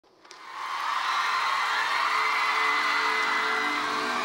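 Studio audience cheering and screaming as the song's intro fades in, with a few sustained synth tones held under the crowd noise.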